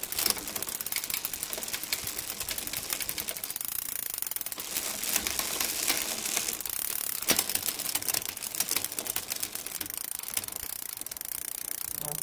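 Bicycle drivetrain: the chain running over an 8-speed rear cassette and through a Shimano Alivio rear derailleur as the cranks are turned, a fast, even clicking while the gears are shifted down the cassette, with louder clacks about five and seven seconds in.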